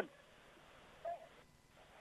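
Near silence in a pause between spoken words of live radio commentary, broken only by one brief faint sound about a second in.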